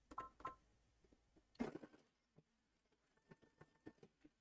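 Near silence: quiet rustles of fabric being handled at a sewing machine, with two short electronic beeps near the start.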